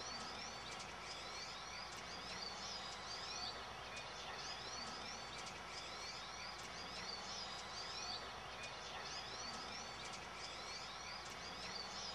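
A small bird chirping: runs of quick, high chirps every second or two over a steady background hiss.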